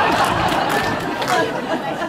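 Audience laughing and chattering, the laughter dying down over the second half.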